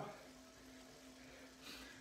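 Near silence: a faint steady hum from an indoor smart trainer being pedalled gently, with a short soft hiss near the end.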